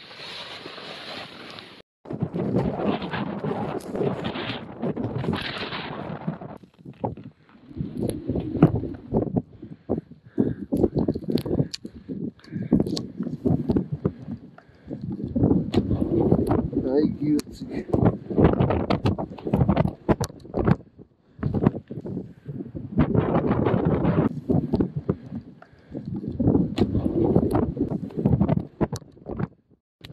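Speech: voices talking in short spells with brief pauses.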